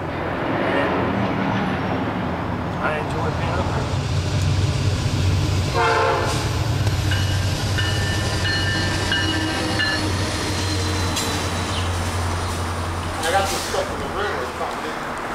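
Diesel freight train passing: Norfolk Southern locomotives hauling double-stack container cars, a steady low rumble throughout. A horn chord sounds for a few seconds past the middle.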